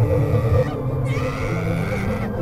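Eerie droning sound effect: a low rumble under held steady tones, with a higher tone that rises about half a second in and then holds.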